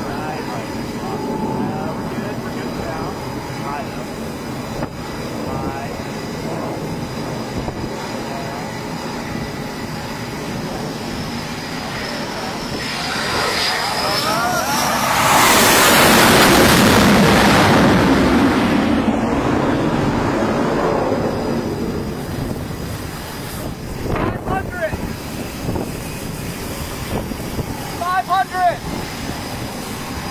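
Jet aircraft landing on a carrier deck: its engine noise swells to the loudest point about fifteen seconds in, holds for several seconds and fades away. Steady wind noise lies under it.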